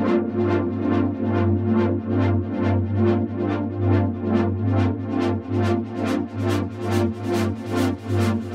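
Korg KingKORG virtual analogue synthesizer playing a held warm pad chord, its filter swept in an even pulse by the LFO at about four pulses a second. The pulses grow brighter and sharper toward the end as the modulation is turned up.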